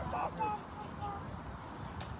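Faint outdoor background of distant voices, with a short child's wavering vocal sound at the very start and a few brief faint pitched notes after it.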